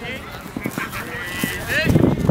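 Ultimate players' raised voices calling out across the field, mixed with the dull thuds of running footsteps on grass that are loudest near the end.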